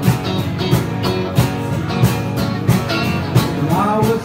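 Live acoustic guitar with a second guitar playing a steady country strumming rhythm, about three strokes a second, in an instrumental gap between sung lines. A singing voice comes back in near the end.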